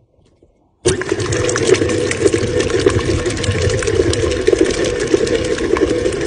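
KitchenAid stand mixer switched on about a second in, its motor running steadily and loudly as the beater mixes cream cheese, heavy cream and powdered sweetener in the bowl.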